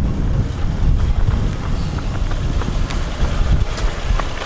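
Strong wind buffeting the microphone in a dense low rumble, with a car approaching along the road.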